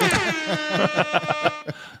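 A man laughing loudly: a quick run of 'ha' sounds, about eight a second, falling in pitch and breaking off shortly before the end.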